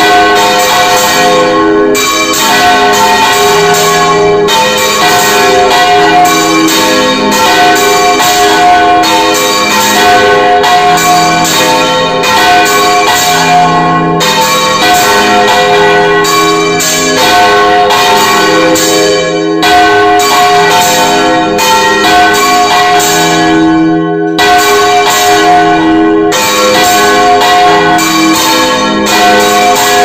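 Bronze church bells rung by full-circle swinging (volteig), a bell on a counterweighted yoke turning right over while clappers strike again and again. The result is a loud, continuous peal of overlapping ringing tones, heard close up inside the belfry.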